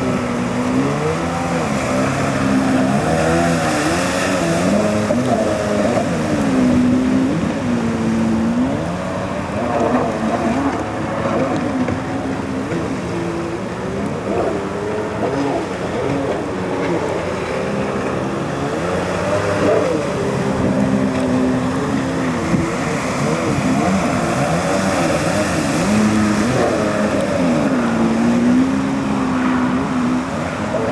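Stand-up jet ski's two-stroke engine running hard on the water, its pitch rising and falling again and again as the throttle is worked through turns.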